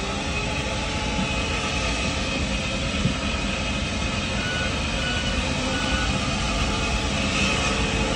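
Steady machinery drone with a few faint, steady whining tones, heard inside an airliner's cargo hold during loading. A single small knock comes about three seconds in.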